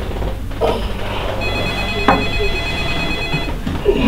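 A phone ringing: one ring of several steady high pitches at once, lasting about two seconds.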